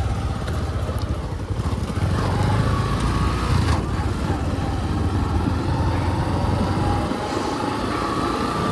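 Motorcycle engine running steadily while riding, heard as a constant low rumble mixed with road and wind noise.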